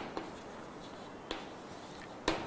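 Chalk writing on a blackboard: faint scratching, with a light tap just after the start and another a little past a second in.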